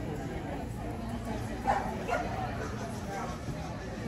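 A dog barking twice in quick succession a little under two seconds in, over a low murmur of people talking.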